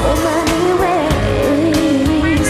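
Live pop music: a sung melody with held, wavering notes over a steady drum beat and bass.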